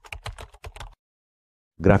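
Computer keyboard typing: a quick run of separate key clicks for about the first second, then stopping abruptly into dead silence.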